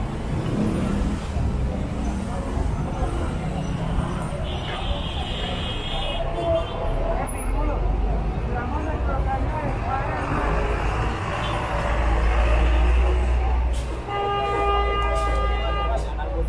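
Busy city street traffic with buses and cars running and people talking nearby, a deep engine rumble swelling in the middle. A vehicle horn sounds for about two seconds near the end, and a shorter high-pitched tone comes a few seconds in.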